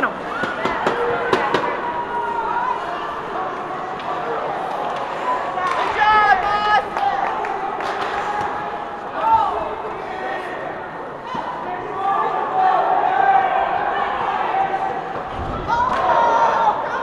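Ice hockey game in a rink: spectators' voices with a loud shout about six seconds in, and sharp clacks of sticks and puck on the ice and boards in the first couple of seconds.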